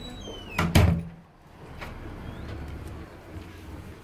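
A door bangs once, loudly, about a second in, then a steady low background.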